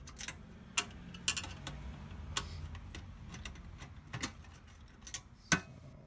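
Small, sharp clicks and ticks at uneven intervals as a screwdriver turns screws out of a monitor's sheet-metal back panel, the sharpest click about five and a half seconds in.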